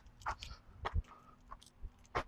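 Soft, irregular knocks and rustles of a person moving about, picked up close on a clip-on lavalier microphone, over a faint steady hum.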